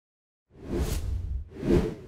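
Two whoosh sound effects, each a swell of hiss over a deep bass rumble: the first starts about half a second in, the second comes near the end. It is an intro transition sting.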